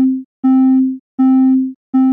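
A low sine-wave synth tone repeating about every three-quarters of a second, each note fading out. It is played through Ableton's Compressor with attack and release at almost 0 ms, which distorts it and gives it a buzzy edge.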